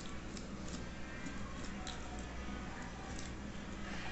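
Faint scattered clicks and soft squishing as fingers work a preserved chili pepper out of the neck of a glass pepper bottle, over a steady low hum.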